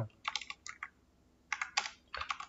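Typing on a computer keyboard: a quick run of key clicks, a short pause of about half a second, then another brief run of keystrokes.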